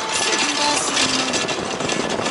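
Motor scooter on the move: its small engine running under a rough, rattling wash of wind and road noise on the microphone.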